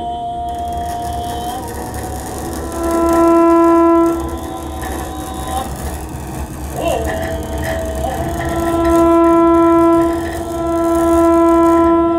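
Live music of long held clarinet notes, swelling to loud peaks three times, over a sustained chanting voice that slides in pitch once about seven seconds in.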